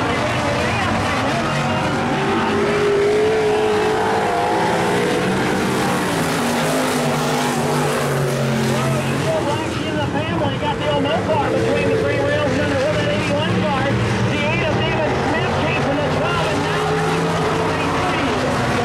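Several dirt-track stock car V8 engines racing at full throttle round the oval, the engine note rising and falling as the cars go through the corners and pass by.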